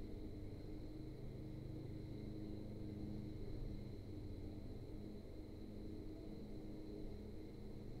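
Faint steady low hum with a thin high-pitched whine, unchanging throughout; room tone with no speech.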